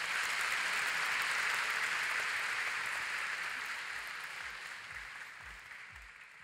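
Audience applauding at the end of a talk: the clapping starts full, holds for a few seconds, then slowly dies away.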